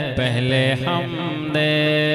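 Male voice singing a naat in a slow melodic line. There is a brief break near the start, then a few short sliding notes, then a long held note from about halfway.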